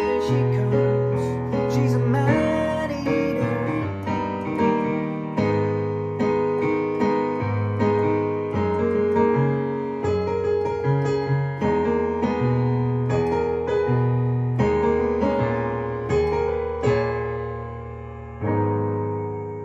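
Digital piano playing a pop song's chorus and outro: rhythmic chords in the right hand over low bass notes in the left. Near the end a chord is left to ring and die away.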